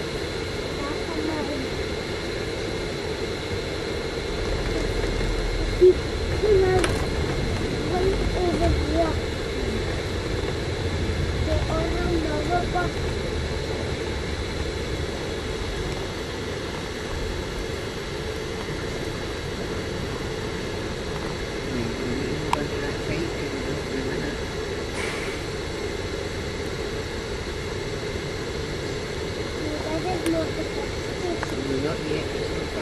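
Steady engine and road noise heard from inside a moving bus in city traffic, with a deeper rumble that swells for several seconds in the first half and a single sharp knock about six seconds in. Faint voices of other passengers sit underneath.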